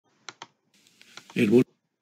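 Two sharp computer clicks, then a few fainter clicks, then a brief voice sound about one and a half seconds in.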